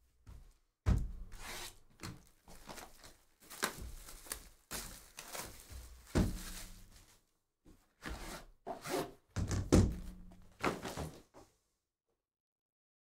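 Packaging of a card hobby box being handled: plastic shrink-wrap rustling and cardboard scraping as the box is unwrapped and its inner case slid out of the outer sleeve. Several hollow thunks of the box knocking on the table, the loudest about a second in and again near ten seconds.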